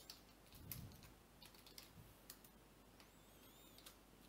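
Faint computer keyboard typing: a few scattered key presses.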